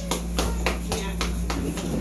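A quick, even run of sharp slaps, about four a second, over a steady low hum.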